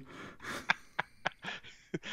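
Soft breathy laughter and breaths from a man close to the microphone, with a few short clicks in between.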